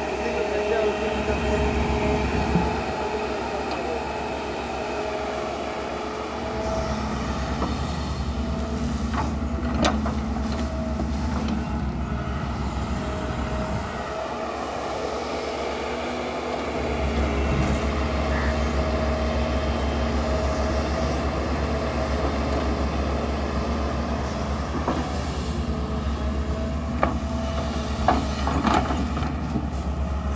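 Tata Hitachi hydraulic excavator running while it digs, its diesel rumble and steady hydraulic whine strengthening and easing a few times as the boom and bucket work. A few sharp knocks stand out, around ten seconds in and again near the end.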